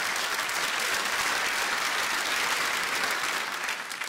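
Theatre audience applauding steadily, easing off near the end.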